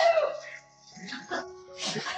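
Two excited dogs whining and yipping while a woman speaks in a high, excited voice, over background music. The loudest calls come right at the start; there is a brief lull just before the middle.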